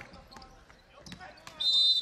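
Faint ball bounces and knocks on a hardwood basketball court, then, about a second and a half in, a referee's whistle blows one loud, steady, shrill blast, calling a shooting foul.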